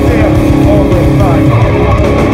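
Metalcore band playing live at full volume, recorded from the crowd: heavily distorted guitars, bass and drums, with vocals over them.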